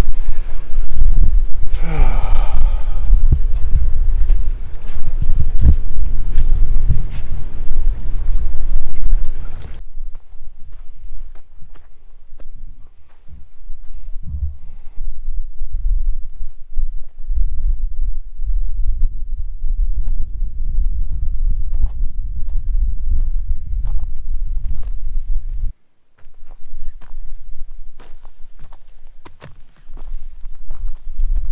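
A man sighs about two seconds in, over a loud, low rumble. After about ten seconds the rumble drops to a quieter level, broken by scattered clicks and taps.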